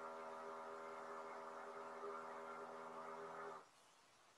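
A faint steady hum with many evenly spaced overtones that cuts off suddenly about three and a half seconds in.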